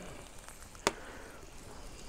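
Fire burning in the centre ring of a steel fire-plate grill, a faint steady hiss with one sharp crackle just under a second in.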